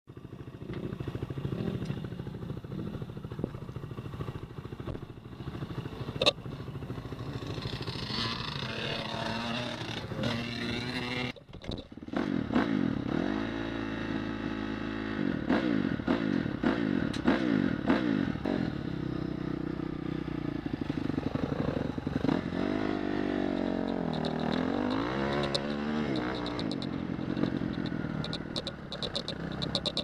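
Off-road motorcycle engine running: steady for the first ten seconds or so, then cut off briefly near the middle, after which it revs up and down repeatedly as the bike rides off. Light ticking and clattering come in near the end.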